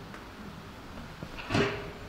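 Hands handling a paper towel and tableware as an egg yolk is lifted on the towel, with one short knock about one and a half seconds in.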